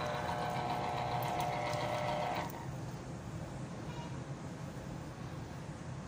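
Small electric citrus juicer's motor running steadily as an orange half is pressed onto its reamer cone, then stopping suddenly about two and a half seconds in.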